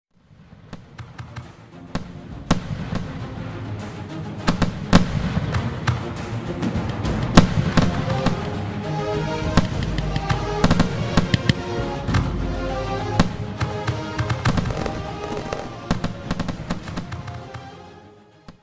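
Fireworks bursting, with repeated sharp bangs and crackling, over music that comes in about eight seconds in. All of it fades out near the end.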